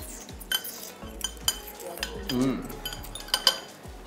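Chopsticks and tableware clinking against dishes in several sharp clicks, two of them close together near the end. A brief murmur of a voice comes about halfway through.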